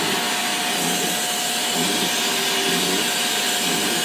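Sandblasting cabinet in use: compressed air and abrasive blasting from the hand-held nozzle give a loud, steady hiss, with a thin steady tone running underneath.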